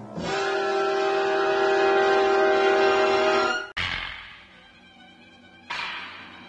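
Opening title music: a loud held chord lasting about three and a half seconds, cut off by a sudden hit that rings away. A second hit comes near the end.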